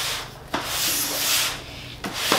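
A heavy cardboard box being slid and turned on a tabletop, scraping across the surface. There is a short scrape at the start, then a longer, louder one from about half a second in.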